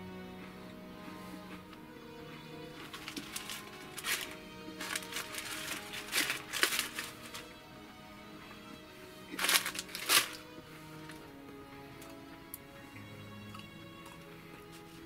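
Quiet background music with steady held notes. Over it come several short crackly bursts from eating and handling dry shortbread cookies, a cluster in the middle and a loud pair about ten seconds in.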